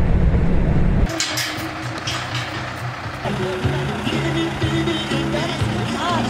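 Low road rumble of a moving vehicle that cuts off abruptly about a second in, followed by background music with a few clicks.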